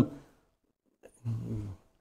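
A short pause in a man's speech: mostly quiet room, a faint click about a second in, then a low hum of about half a second, like a hesitating "mm".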